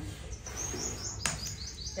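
A small bird giving a fast run of high chirps, with a single sharp click about a second in.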